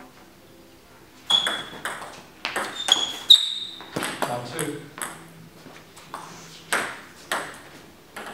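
Table tennis ball in a fast rally, struck back and forth by bats and bouncing on the table, each contact a sharp click with a brief high ping. The rally runs for about two seconds and stops, followed later by a few single bounces.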